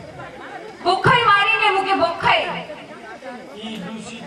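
Speech only: a voice speaking over a microphone, about a second in, with chatter behind it.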